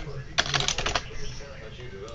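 Typing on a computer keyboard: a quick run of keystrokes about half a second in, then quieter.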